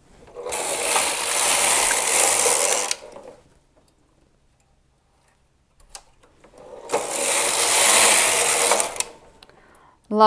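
Carriage of a Singer punch-card knitting machine pushed across the needle bed twice, knitting a row each way. Each pass lasts about two and a half seconds, with a pause of about four seconds between them.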